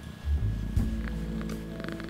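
A Munchkin cat purring while being massaged, under light background music.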